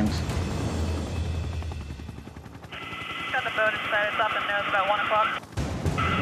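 Helicopter cabin noise in flight: a steady low drone. From about three seconds in there is a rapid pulse underneath and thin, tinny crew voices over the intercom, which break off shortly before the end.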